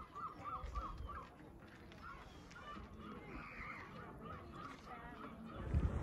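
A bird calling faintly in quick repeated notes, a few a second: one run about a second long, then a longer run from about halfway through.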